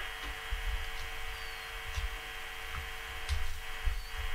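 Steady electrical hum on the broadcast line during a pause in speech, with a few soft low thuds.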